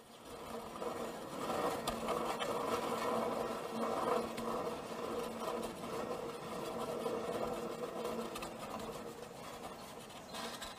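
Motorised stage curtain running as it draws across a cinema screen: a steady mechanical whir of motor and pulleys with a low hum, easing off near the end.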